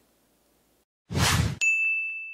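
Logo sting sound effect for an end card: a short whoosh about a second in, followed at once by a bright bell-like ding that rings on and slowly fades.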